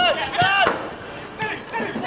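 Footballers shouting to each other on the pitch: two loud, short, high-pitched calls in quick succession at the start, then fainter voices and a few dull thuds.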